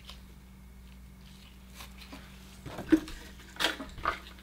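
A few small sharp clicks and taps from items being handled on a table, the loudest about three seconds in and another shortly after, over a faint steady hum.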